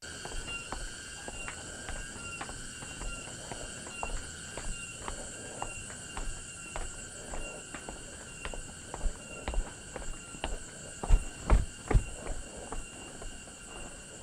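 A steady insect chorus with a constant high-pitched buzz, over footsteps on a paved path at an even walking pace. There are a few heavier steps or thuds near the end.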